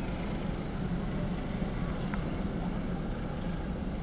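Steady low drone of a diesel-hauled passenger train running slowly toward the station, heard from a distance.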